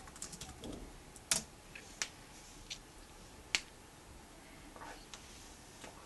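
Typing on a Sony VAIO laptop keyboard: a quick run of key taps at the start, then single sharper key clicks spaced roughly a second apart, two of them louder than the rest.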